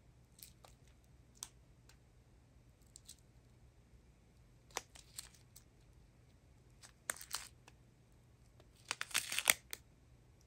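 Thin clear plastic zip bags of diamond-painting drills crinkling as they are handled: scattered faint rustles, then louder bursts of crinkling about seven seconds in and again near the end.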